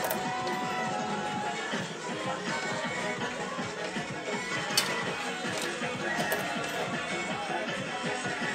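Electronic background music from a coin-op pinball gambling machine, playing steadily, with a sharp click about five seconds in.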